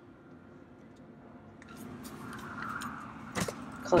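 Quiet handling noises that grow into a faint rustle, with one sharp click about three and a half seconds in.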